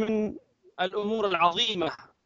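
A man's voice in two short stretches with a brief pause between, the second longer than the first.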